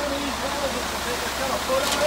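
Concrete mixer truck running: a steady engine hum and rumble, with faint voices over it.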